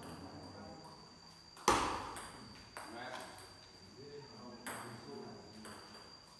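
Table tennis rally: the ball cracks off paddles and bounces on the table, about five sharp hits roughly a second apart, the loudest about two seconds in. Each hit echoes briefly in the hall.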